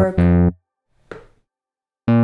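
Ableton Live's synth bass previewing single MIDI notes as they are dragged in the piano roll. There is one short plucked bass note at the start, and a fainter, shorter blip about a second in.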